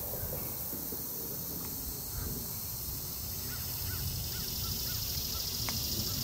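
Outdoor lakeside ambience: a steady high drone of insects over a low rumble, with a bird calling in a quick run of about six short chirps about halfway through. A single sharp click comes near the end.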